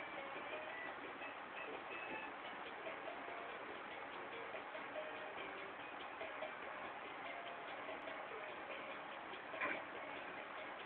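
Electronic light-up toy drum playing a faint tune of short, scattered electronic notes over a steady hiss, with a brief louder sound near the end.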